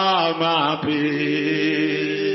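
Wordless vocal chanting in worship on long held notes, one voice gliding up and down in pitch in the first second before settling on a steady note.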